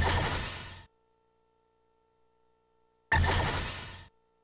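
Electronic soft-tip dart machine playing its hit sound effect twice, a sudden crash that fades within about a second each time, one right at the start and one about three seconds in. Each marks a dart scoring a triple 18.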